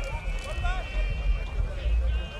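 People talking among a crowd of spectators, over a steady low rumble.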